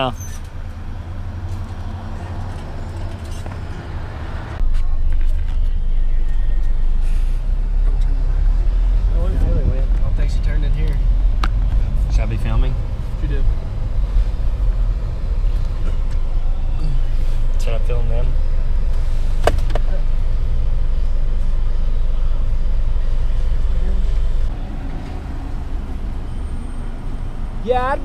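Car driving, heard from inside the cabin: a loud, steady low road and engine rumble that starts abruptly about four and a half seconds in and drops away near the end.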